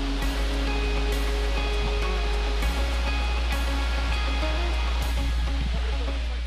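The steady rush of a waterfall under background music with long held notes.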